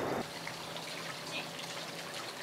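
Steady background sound of water running in a garden pond, quiet and even, with a faint low hum under it.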